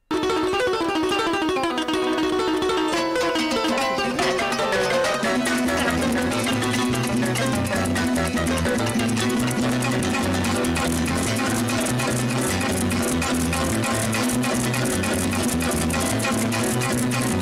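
Latin American folk harp music starting suddenly: fast plucked runs in the treble, with a repeating pattern of low bass notes joining about five seconds in.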